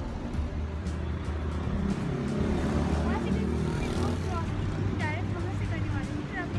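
Busy city street ambience: a steady traffic rumble with music and voices mixed in.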